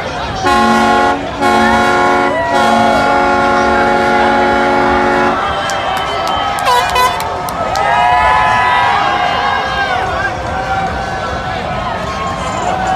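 A boat's horn sounds three times at one steady pitch: two short blasts, then a long one of about three seconds. Shouts and cheers from people follow.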